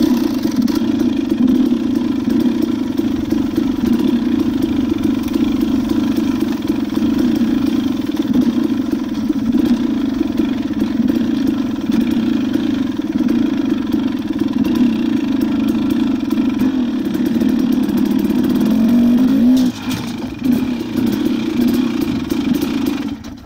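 Dirt bike engine pulling away suddenly and then running steadily under throttle, with a brief drop and wavering in pitch near the end as it slows.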